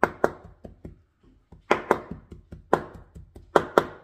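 Cleaver chopping raw chicken breast on a wooden cutting board to mince it: sharp knocks of the blade on the board in quick pairs, four pairs with a short pause about a second in.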